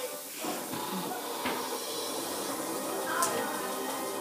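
Television audio playing in the room: steady background music with faint speech, and a couple of light clicks.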